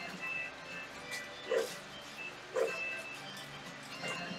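A dog barking twice, about a second apart near the middle, over music playing steadily in the background.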